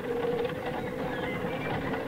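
Steady rumbling background sound effect of a horse-drawn carriage rolling along, with a constant hum running through it.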